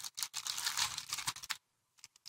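Crinkling and crackling of a small plastic bag being handled and opened, a rapid run of clicky rustles that stops about a second and a half in, followed by a few faint ticks.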